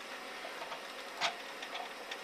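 Faint steady hiss of a recorded telephone line during a pause in the call, with a brief faint sound about a second in and a few light ticks.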